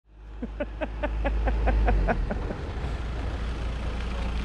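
Low rumble of a vehicle moving slowly along a concrete-slab road, fading in at the start. For the first two seconds a fast, even run of short squeaky chirps, about six a second, rides over the rumble.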